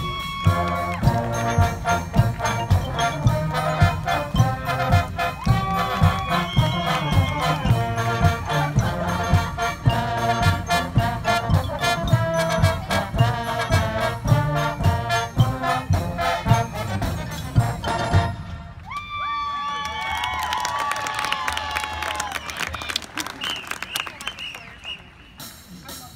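Marching band of brass and percussion playing loudly over a steady drum beat. About eighteen seconds in, the drums drop out and the horns play softer, sliding notes.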